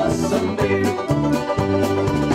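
Live Cleveland-style polka band playing an instrumental passage: accordion, saxophones, banjo and drum kit over a steady beat.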